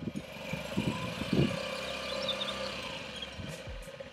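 Honda Ruckus 50 cc scooter's single-cylinder four-stroke engine idling steadily.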